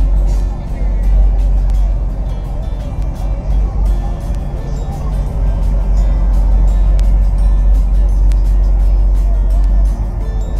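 Background song with a singing voice, over a steady deep rumble.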